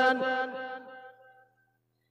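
A man's chanted sermon: the last note of a sung phrase is held and fades out about a second and a half in, followed by a short silence.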